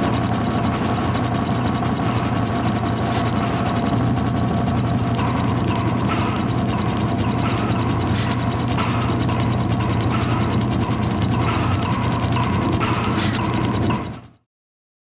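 A mechanism running steadily: rapid, even clicking over a steady low hum, at a constant level throughout, cutting off abruptly at the end.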